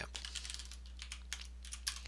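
Typing on a computer keyboard: irregular, quick keystrokes, a few at a time, over a faint steady low hum.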